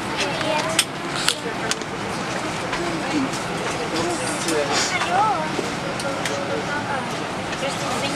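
Steady hum of an airliner cabin with quiet voices talking underneath it. A few sharp clicks come in the first two seconds.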